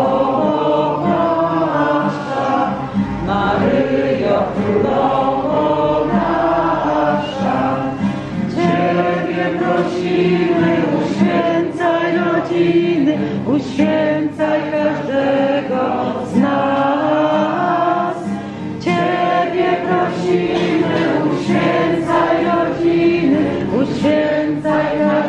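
A mixed group of men and women singing a religious song together, accompanied by a strummed acoustic guitar.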